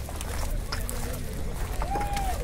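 Concrete paving blocks knocking and clacking as they are set into place by hand, in scattered sharp clicks over a steady low rumble.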